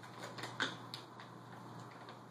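A treat bag's packaging being handled and opened, crinkling, with a scatter of sharp crackles and clicks. The loudest comes about half a second in.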